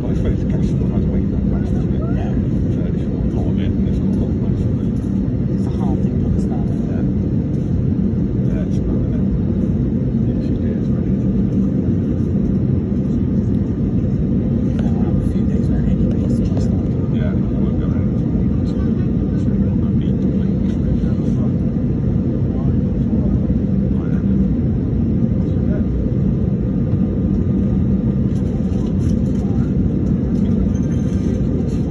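Steady low rumble of an airliner's engines heard inside the passenger cabin, with the aircraft stopped on the taxiway and the engines at idle. Faint indistinct voices sit underneath.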